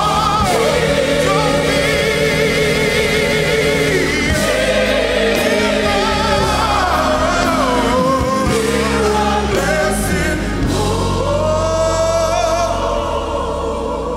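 A male gospel soloist singing a hymn with wide vibrato, backed by a choir and instrumental accompaniment, easing off slightly near the end.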